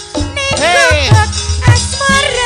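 Live Javanese gamelan music with a female sinden singing into a microphone. Her voice swoops up in an arching slide and drops steeply, over two low drum beats.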